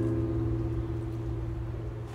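A chord on a nylon-string classical guitar ringing on and slowly fading, a low bass note held under several higher notes.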